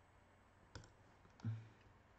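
Computer mouse clicking twice in quick succession about three-quarters of a second in, then a brief low hum of a man's voice, over faint room tone.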